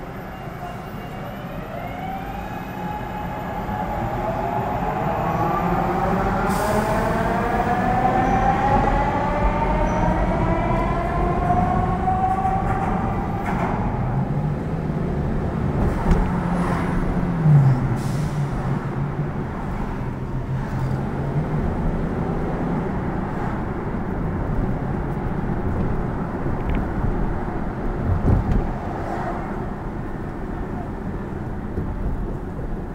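Elevated train running on the tracks overhead, its traction motors giving a whine that rises steadily in pitch over about ten seconds as it accelerates. After that comes a low engine drone as a city bus passes close by, over a bed of street traffic noise.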